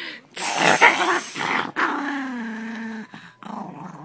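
A chihuahua growling: a harsh, noisy snarl for about a second and a half, then a longer, steadier growl.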